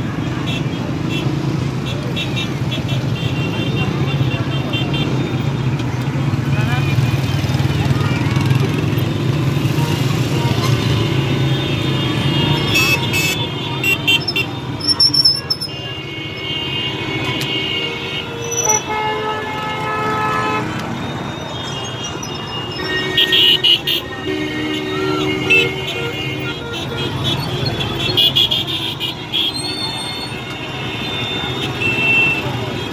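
Slow, crowded street traffic: car and scooter engines running in a steady low rumble, with car horns honking in repeated toots, mostly in the second half, over voices of the crowd.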